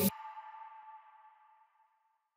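The last syllable of a spoken word, then a faint ringing tone with several pitches that fades away over about a second and a half.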